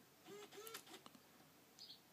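Near silence: quiet room tone with a few faint, short chirps and light clicks.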